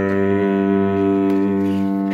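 A chord held on a musical instrument, sounding steadily without fading, as a pause in the singing.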